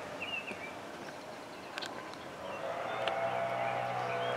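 Quiet outdoor ambience: a small bird chirps a few times in the first second, with a couple of faint footfalls of sneakers on wooden deck boards. A steady low hum, like a distant engine, fades in during the second half.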